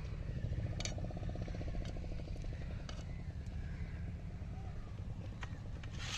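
A small engine running steadily in the background, with a rapid even pulsing that fades out about four seconds in. Over it come a few light clinks of a knife and cut fish pieces against a steel plate.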